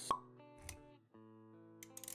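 A sharp pop sound effect just after the start, then a softer low thud, over quiet background music with held notes.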